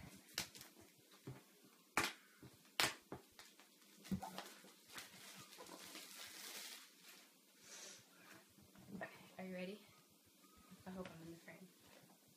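Clear plastic wrapping rustling and crinkling as a new laptop box is unwrapped, with a few sharp clicks in the first few seconds.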